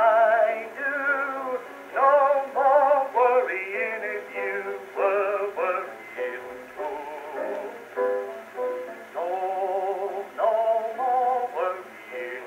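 Edison Diamond Disc record playing on a cabinet phonograph: a wordless melodic passage with strong vibrato. It has the thin, boxy tone of an acoustic recording, with no deep bass and no top end.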